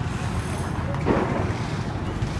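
Ferrari 488 GTB twin-turbo V8 running at low speed as the car creeps forward, with a brief surge in engine noise about a second in. Wind noise on the microphone.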